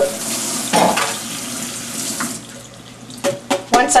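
Kitchen tap water runs over a slit leek and splashes into a stainless-steel sink as the leek is rinsed clean of dirt. The water stops a little past halfway through. Near the end come a few sharp knocks of a knife against a wooden cutting board.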